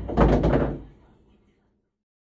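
Pool balls knocking together and rolling on a billiard table after a shot, dying away about a second and a half in.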